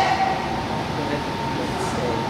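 Steady room noise of a large indoor hall: an even rumble and hiss with a faint, constant high tone running through it.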